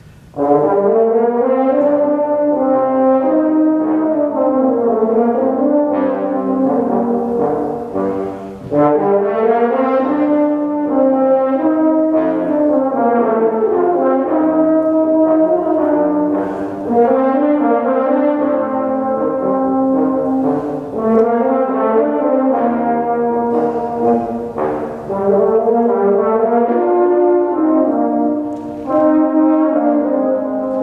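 Brass quintet starting a tango about half a second in. French horn and two trombones carry the opening, and the two trumpets join in the second half.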